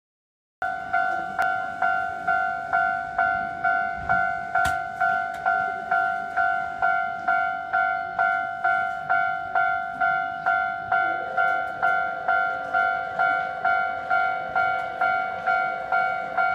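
Japanese railway level-crossing warning bell ringing: an electronic two-tone ding repeated evenly about 1.7 times a second, starting about half a second in. A fainter lower tone joins about two-thirds of the way through.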